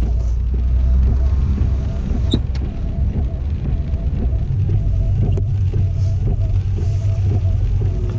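Steady low rumble of a car cabin as the car moves slowly through a turn in heavy rain, with faint music underneath and a couple of single clicks.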